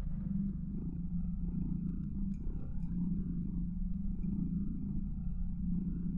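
A low, steady droning rumble with a slowly pulsing texture.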